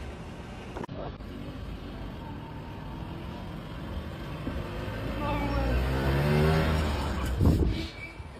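Small engine of a tiny three-wheeled microcar driving along a street. Its pitch climbs steadily for a few seconds, then falls away as it goes by.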